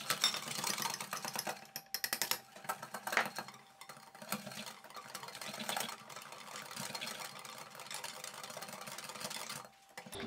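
Wire balloon whisk beating cake batter in a glass bowl, the wires clicking and scraping against the glass in a fast, uneven run, faint throughout.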